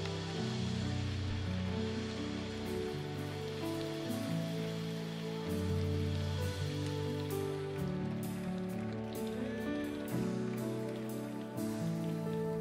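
Slow instrumental worship music from a live church band: sustained keyboard chords over a deep bass, moving to a new chord every second or so, with a soft hiss and light ticks above.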